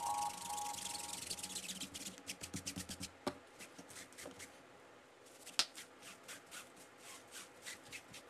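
Faint scrubbing of a cleaner bottle's small applicator against a foamy sneaker insole: a quick run of short scratchy strokes, then sparser, fainter rubbing as a microfiber towel wipes the insole. The last notes of a chime-like music sting fade out at the start.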